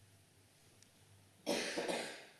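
A single sharp cough near the end, after a stretch of faint, low steady hum.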